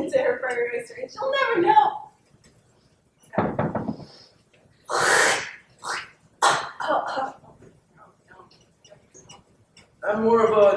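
A young woman's short vocal sounds, then several separate coughing, sputtering bursts, the loudest a harsh cough about halfway through.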